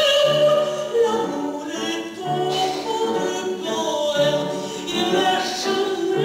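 A woman singing in operatic style with strong vibrato over an instrumental accompaniment whose low notes recur about every two seconds.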